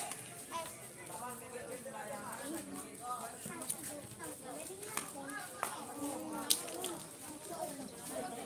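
Several distant voices shouting and calling out during open play in a football match, with a few sharp knocks scattered through it.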